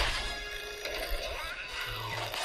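Cartoon film soundtrack: dramatic score music under crashing, clattering destruction effects, with a sharp crash at the start.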